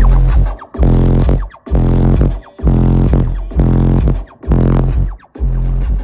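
Car audio system with four Pioneer Premier subwoofers playing music very loud, the heavy bass coming in long pulses about once a second.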